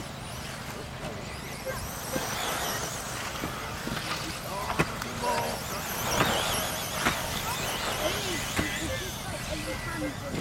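Electric 1/10-scale two-wheel-drive radio-controlled off-road buggies racing, their motors whining up and down in pitch, with spectators chatting in the background. A sharp knock sounds about five seconds in.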